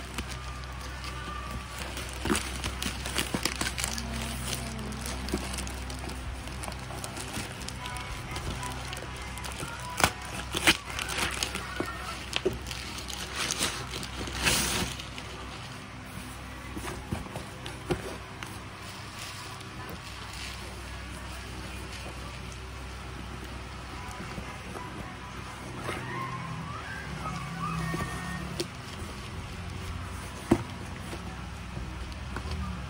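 Plastic mailer bag crinkling and rustling as it is cut with scissors and a cardboard box is pulled out and handled, with scattered crackles and louder rustles about ten and fifteen seconds in.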